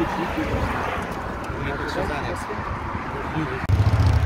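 Indistinct voices of several people talking over a steady outdoor background hiss. Near the end a loud low rumble sets in suddenly.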